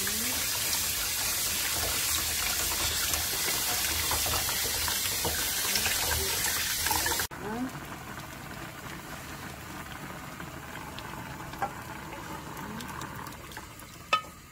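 Kitchen tap running hard onto maesaengi seaweed being rinsed by hand in a mesh strainer in a steel sink. About seven seconds in it cuts off suddenly to a much quieter pan of rice-cake soup bubbling on the stove while a wooden spatula stirs it, with a few light ticks.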